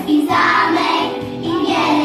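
A group of young preschool children singing a song together in chorus, holding sustained notes.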